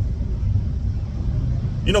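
Steady low rumble of a car being driven, heard from inside the cabin.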